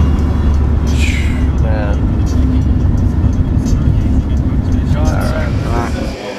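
Steady low rumble of a car's engine and tyres heard from inside the cabin while driving on the highway, with brief snatches of voices twice. It stops abruptly near the end.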